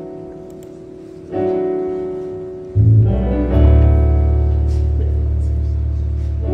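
Electronic keyboard playing held chords over a deep bass as the instrumental introduction to a gospel choir song. A new chord comes in about a second in, and fuller, louder chords with heavy bass notes follow from about halfway through.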